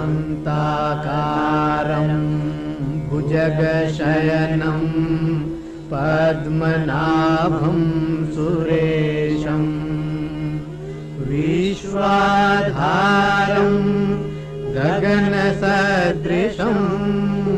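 Sanskrit hymn to Vishnu chanted in slow melodic phrases of two to three seconds each, over a steady sustained drone.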